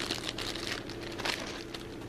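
Clear plastic packaging crinkling irregularly as it is handled.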